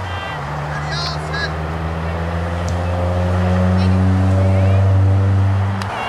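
Low, steady engine hum that swells over the second half and eases off just before the end.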